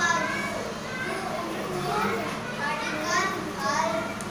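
Children's voices talking throughout, over a steady low hum.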